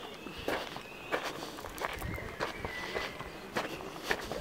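Footsteps crunching on a gravel path, about five unhurried steps.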